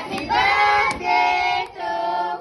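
A group of children and women singing together in long held notes.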